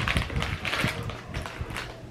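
A small Pokémon trading-card mini pack being torn open by hand: a quick run of crinkling and tearing from the wrapper.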